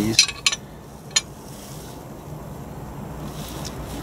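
A few light metallic clicks of a bolt and nut being handled against a steel mounting bracket, all within the first second or so, over a faint low background hum.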